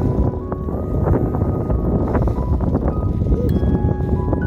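Stroller rolling along a paved path: a steady low rumble, with faint background music over it.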